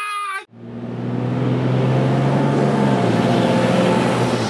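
A short shouted "ah!", cut off abruptly, then after a moment's gap a steady low drone with a faint high whine that swells steadily in level.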